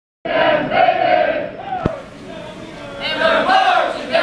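A group of men and women singing their class song loudly in unison, in two phrases: the first starting just after the opening, the second about three seconds in. A single sharp click falls between them, about two seconds in.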